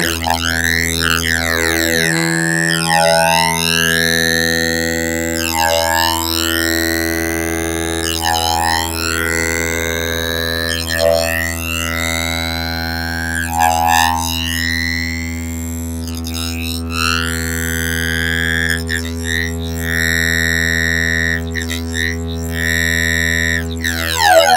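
A Make Noise STO oscillator drone through a Modcan Dual Phaser, its two 24-stage phasers chained into 48-stage phasing. Deep, intense sweeps repeat about every two and a half to three seconds, driven by Maths envelopes. Near the end the sweeps turn into quicker, shorter flickers.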